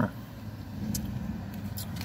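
Steady low rumble of a parked car's idling engine heard inside the cabin, with one faint click about halfway through.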